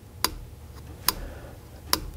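Fingernail clicking three times as it is drawn across the edge of a steel chainsaw guide bar rail and catches on the burr. The sharp little clicks are the sign of mushrooming, metal worn and pushed out over the side of the rail by the running chain.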